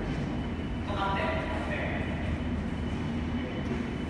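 A steady low rumble of background noise. A faint voice is heard briefly about a second in.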